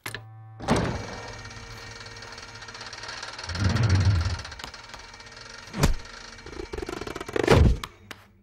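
Cartoon sound effects for an animated logo: a string of thumps and crashing impacts, the sharpest about a second in, near six seconds and near the end, with a heavier low rumble just before the middle. Faint steady tones lie underneath.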